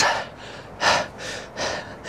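A man breathing hard with a few short, quick breaths, under the effort of seated barbell good mornings.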